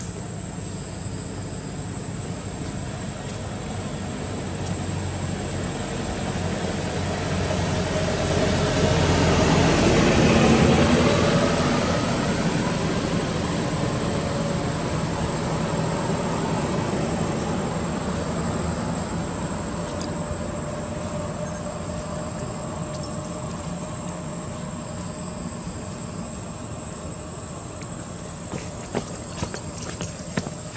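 Engine noise of a passing motor, swelling to its loudest about ten seconds in and then slowly fading away. A few sharp clicks near the end.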